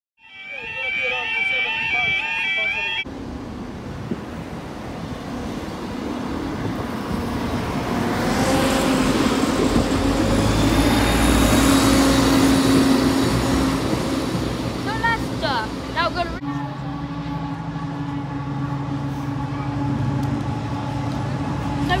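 Trains at level crossings. About three seconds of repeating pitched tones come first. Then a passing train's rumble builds up and fades. Near the end comes a steady hum of a locomotive engine as a train approaches.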